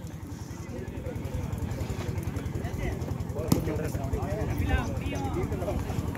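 Faint chatter of players and spectators at an outdoor volleyball court over a steady low rumble, with a single sharp click about three and a half seconds in.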